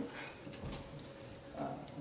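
A pause in a man's talk: faint room tone, ending in a short spoken "uh" near the end.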